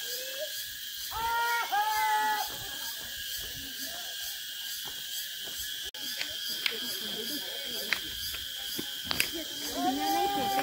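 Steady high-pitched drone of insects in the surrounding forest. About a second in comes a short call of two held notes, and a few sharp clicks follow in the second half.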